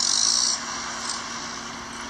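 Steady outdoor background noise with a short burst of hiss at the start.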